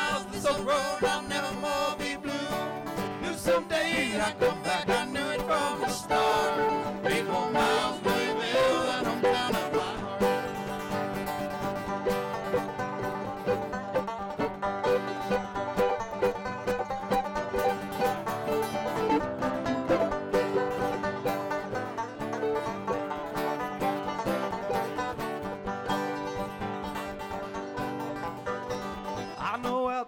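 Live bluegrass trio of banjo, mandolin and acoustic guitar playing an instrumental break between sung verses.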